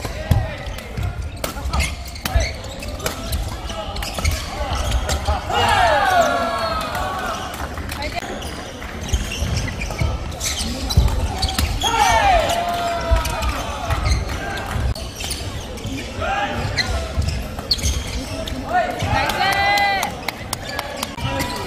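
Badminton doubles rally on a hall court: sharp racket strikes on the shuttlecock, and shoes squealing on the court floor several times as the players lunge and stop. Voices chatter in the hall behind.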